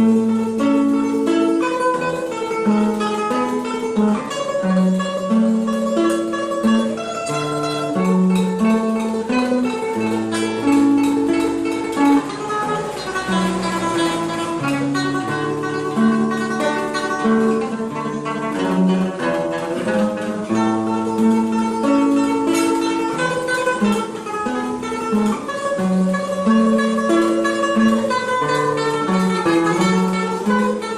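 Solo nylon-string classical guitar played fingerstyle: a plucked melody over bass notes, running steadily throughout.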